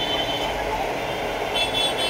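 Steady background rumble of road traffic and street noise, with no distinct events.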